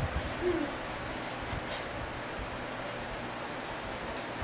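Steady whir of the DLP TV optical engine's lamp cooling fan, running with the lamp lit, and a brief single low tone about half a second in.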